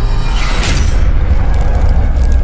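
Cinematic logo-intro sound design: a deep, sustained booming rumble over music, with a whoosh about half a second in.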